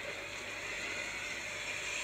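Steady rushing noise from a movie trailer's soundtrack, a sound-design swell that set in suddenly just before and holds evenly.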